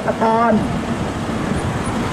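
Steady road traffic noise, an even rumble of vehicles, once a man's voice stops about half a second in.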